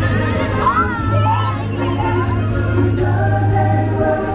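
Loud Christmas parade music with a steady bass note and sung voices. A wavering voice rises over it for a couple of seconds in the first half.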